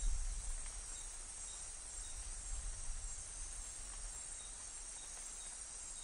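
Amazon rainforest night ambience: a steady chorus of insects with faint repeated chirps, over a low rumble that is strongest about the first second.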